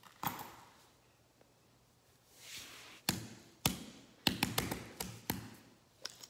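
Small plastic fidget toys being handled and set down on a hard floor: a knock just after the start, a soft rustle about two and a half seconds in, then a run of sharp taps and clicks over the next two seconds.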